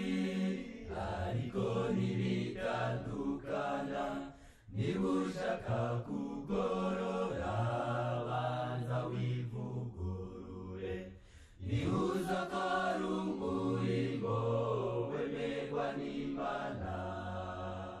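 Chant-like vocal music of voices holding long, low sustained notes, sung in phrases with short breaks about four and eleven seconds in.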